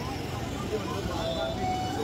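Busy street at night: steady traffic noise with indistinct voices in the background.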